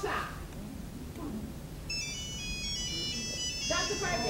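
Mobile phone ringtone: a high electronic melody of quick, changing notes that starts about two seconds in and plays for a few seconds.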